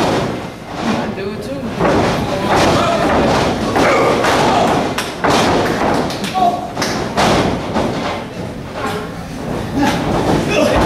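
Several heavy thuds of wrestlers' bodies hitting the raised wrestling ring's canvas, over voices shouting in an echoing hall.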